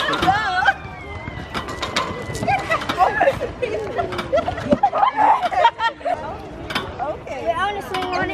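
Several children's voices laughing, squealing and calling out over one another in high, excited bursts.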